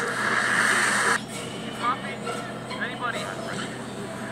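Monster-film soundtrack playing on a TV and picked up by a phone's microphone. A loud, harsh creature cry cuts off suddenly about a second in, and a quieter stretch follows with short chirping, voice-like calls.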